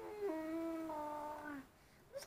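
A young girl's voice holding one long wordless note that drops to a lower pitch shortly after it begins and stops about a second and a half in.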